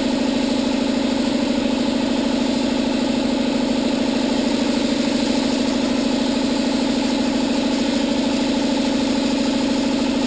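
A piston air compressor running steadily, a loud low drone with a rapid even pulse, supplying air to a gravity-feed spray gun that is spraying polyester gelcoat, with a hiss of air over it.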